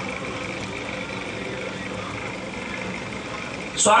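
Steady background hum and hiss with a few faint steady tones, then a man's voice through a microphone starts again near the end.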